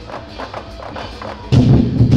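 Temple-procession percussion music with drum beats. It is softer for the first second and a half, then loud drumming comes back in sharply about one and a half seconds in.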